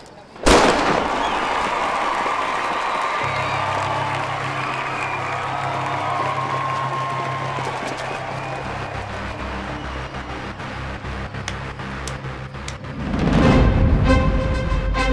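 A single sharp pistol shot about half a second in, followed by dramatic film score music over a dense wash of background noise. A steady low bass line enters about three seconds in, and the sound swells again near the end.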